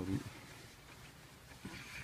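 A man's voice finishing a word, then a faint, steady low hum of background noise inside a stationary car, with faint voices near the end.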